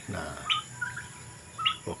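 Young turkeys (poults) giving short, high peeping calls: two clearer peeps, about half a second in and near the end, with a few softer calls between.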